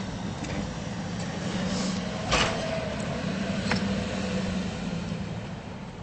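A vehicle engine idling steadily. About two seconds in there is a sharp clank that rings on for about a second, with a lighter click a little later.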